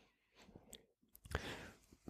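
Near silence with a few faint, short clicks around the middle, the loudest a little past halfway.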